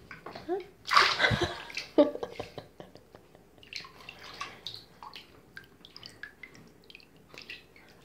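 A rubber ball dropping into bath water with a loud splash about a second in, followed by water sloshing and dripping in the tub.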